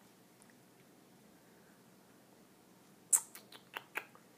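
Near silence, then near the end a quick cluster of about five sharp clicks from small objects being handled, the first the loudest.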